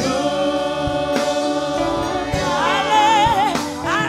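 A congregation singing a gospel worship song together with a live band of keyboards and electric guitars. From about halfway in, a single voice with a wavering vibrato rises above the group.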